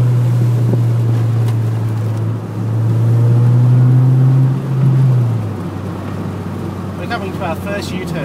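Toyota MR2 AW11's mid-mounted four-cylinder engine droning steadily as heard inside the cabin on the move. It dips briefly about two and a half seconds in, then drops off a little past five seconds and stays lower to the end.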